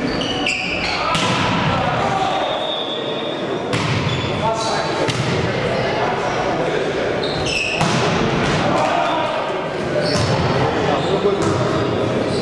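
Volleyball rally in a large sports hall: repeated sharp smacks of the ball being hit, with players shouting, all echoing off the hall.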